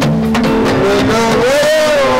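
Live band music over a PA with sustained held instrument notes; about a second in, a man's voice comes in singing a wavering, bending melodic line into the microphone.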